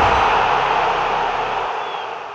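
Channel-logo intro sound effect: a loud rushing noise, like TV static, that slowly fades toward the end, with a faint brief chime near the end.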